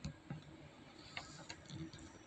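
A few faint, scattered clicks over quiet room tone.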